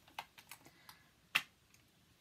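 Faint taps and clicks of a compact eyeshadow palette being handled and opened, with one sharper click about a second and a half in.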